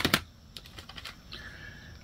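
Plastic CD jewel cases clacking as they are handled and swapped: a sharp double clack at the start, then several light clicks.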